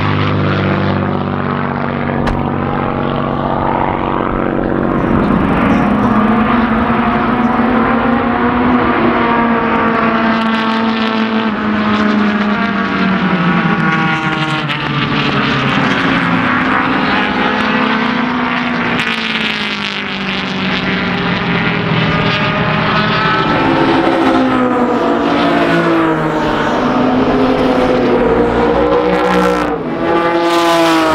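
A propeller-driven piston-engine fighter plane flies over, its engine note slowly rising and falling. Racing cars then pass on the circuit, their engine notes climbing and dropping quickly.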